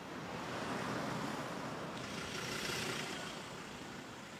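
Faint street traffic noise, a steady rush that swells about half a second in and eases toward the end.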